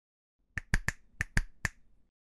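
Intro sound effect for an animated logo: six sharp, snap-like clicks in two quick groups of three.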